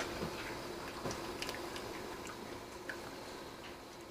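Faint, scattered light clicks and drips as metal tongs lift steamed artichokes, wet with cooking liquid, out of a stainless pan, over a faint steady hum.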